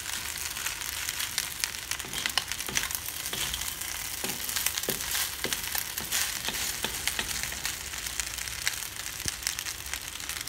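Fusilli pasta frying in a hot pan, sizzling steadily while a spatula stirs and tosses it, with many small clicks and scrapes of the spatula against the pan.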